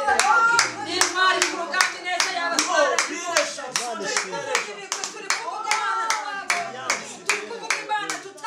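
Hands clapping a steady beat, about three claps a second, over several people's voices.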